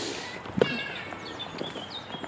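Footsteps on a dirt woodland path, with birds chirping in thin, high notes from about half a second in.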